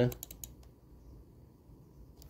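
A few faint, sharp clicks in the first half-second and a couple more near the end, over quiet room tone.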